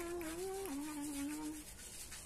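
Fingers rubbing a home remedy into wet hair and scalp, a soft scratchy rubbing. Over it a held humming tone steps up in pitch, drops about two-thirds of a second in, and stops a little before the end.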